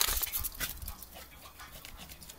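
A small dog making short breathy sounds as it runs about, several in quick succession. A sharp, loud noise right at the start is the loudest thing.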